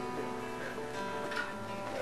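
Acoustic guitar being played, its strummed notes ringing on steadily.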